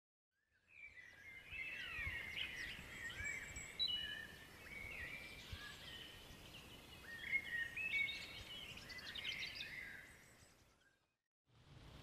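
Several small songbirds singing and chirping, with overlapping short whistles, trills and quick pitch slides. It fades in about a second in and fades out near the end.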